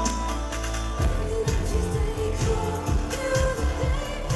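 Live synth-pop band playing with singing: a synth bass holds one low note for about a second, then the drum beat comes back in at about two beats a second under the sustained vocal and synth line.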